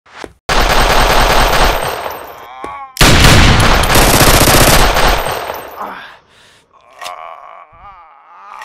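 Two long bursts of rapid automatic gunfire sound effects, the second starting just after a short break about three seconds in and tailing off around five seconds. Near the end, a man's pained groan.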